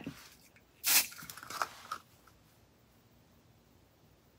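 A single short hiss from a small aerosol body-spray can, sprayed once for a fraction of a second about a second in.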